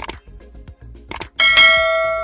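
Sound effects: a sharp mouse click at the start and another just past a second in, then a bright notification-bell ding that rings on and slowly fades, over faint background music.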